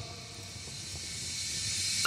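Gap between two songs of a lofi mix: a soft, even hiss that slowly swells toward the end, leading into the next track.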